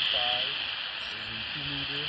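Steady static hiss from a Baofeng UV-5G Mini GMRS handheld's speaker as it listens after a call for a radio check, with no reply coming through.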